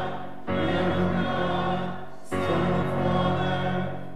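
Church choir singing a part of the Mass, in phrases about two seconds long separated by short breaks.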